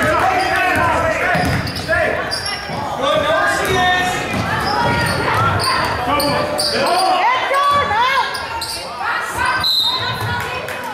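A basketball bouncing on a hardwood gym court and sneakers squeaking in short chirps as players run and cut, over continuous talk and shouts from players and spectators.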